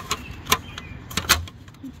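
Sharp plastic-and-metal clicks as a wire retaining ring is pressed into the clip tabs of a plastic wheel cover: one click about a quarter of the way in, then two quick clicks just past halfway.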